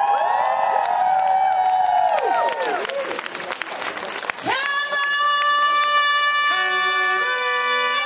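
Live soul-jazz band with a horn section: overlapping notes bend and slide up and down for the first few seconds, then a flurry of drum hits, then the band holds a sustained chord whose notes shift in steps near the end.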